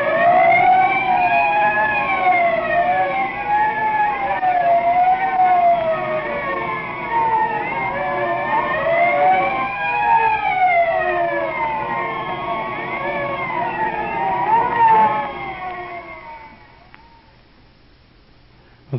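Several sirens wailing together, each sweeping slowly up and down in pitch and overlapping the others, then fading out near the end: a siren sound effect closing an old-time radio police serial.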